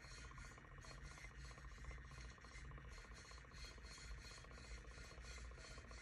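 Very faint rubbing as a strand of plastic Mardi Gras beads is dragged through wet acrylic paint on a tumbler, over a low steady hum.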